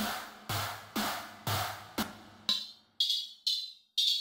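Farbrausch V2 software synthesizer playing drum presets: a distorted synth snare hit twice a second, then, about two and a half seconds in, a flanged 909-style ride cymbal patch at the same pace, thinner and higher with no low end.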